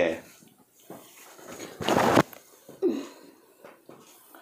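A person's loud breathy exhale, a noisy burst of about half a second about two seconds in, followed a second later by a short vocal sound that falls in pitch.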